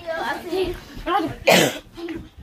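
A child's voice making short vocal sounds, then a loud, harsh cough about one and a half seconds in.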